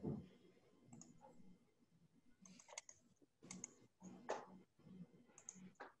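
Near silence broken by faint, irregular clicks and light knocks, about a dozen spread unevenly, with no speech.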